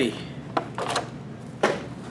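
Clear plastic packaging of miniature figures being handled, with three short crackles, the sharpest shortly before the end.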